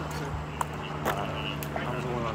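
Outdoor talk from people off to one side over a steady low hum, with a few sharp clicks.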